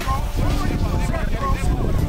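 Several spectators' voices shouting and calling out at once, over a low rumble of wind on the microphone.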